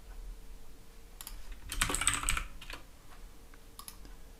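Computer keyboard typing a short word: a quick run of keystrokes about two seconds in, with a few single clicks before and after.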